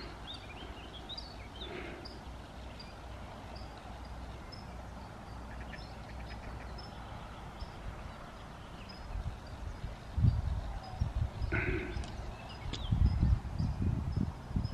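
Faint birdsong by a pond: a short high note repeated about twice a second, with a duck's quack near the end. Low gusts of wind rumble on the microphone in the last few seconds.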